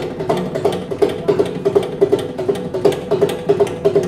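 Mridangam played solo with the hands: a fast, even run of sharp strokes, most of them ringing with a clear pitch, over deeper bass strokes.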